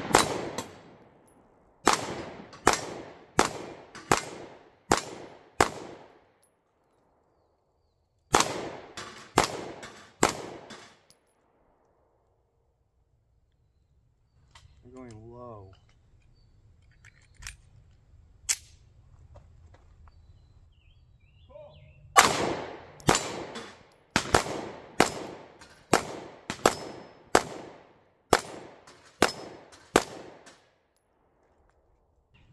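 Ruger Max-9 9mm pistol fired in rapid strings at steel targets, each shot sharp with a short ringing tail. About a dozen shots come in the first eleven seconds. After a pause with two faint clicks, a second, faster string of roughly two shots a second starts about 22 seconds in.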